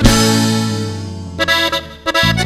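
Norteño band music: a full accordion chord, over bass, struck and held, fading for about a second and a half, then a few short stabbed chords leading into a brief break.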